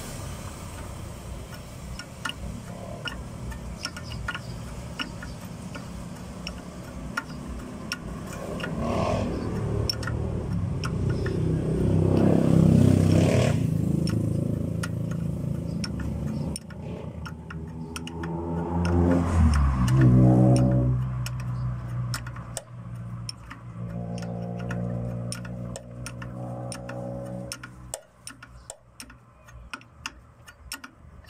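Motor vehicle engines rising and falling, loudest about twelve and twenty seconds in, over a steady run of light ticks that grow quicker near the end.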